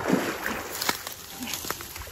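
Water splashing and dry reed stems rustling and cracking as someone wades in a shallow river and lifts a small dog out. A burst of splashing comes right at the start, followed by several sharp cracks of the stems.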